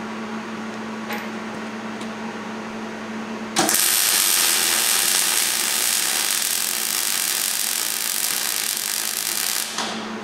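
Wire-feed welder arc crackling through one continuous bead of about six seconds, starting abruptly a few seconds in and cutting off just before the end. A steady low hum is under it before the arc strikes.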